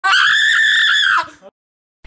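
A shrill, high-pitched scream, held steady for about a second before trailing off.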